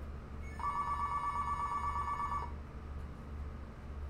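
Telephone ringing: one warbling electronic ring of about two seconds, starting about half a second in, over a steady low hum.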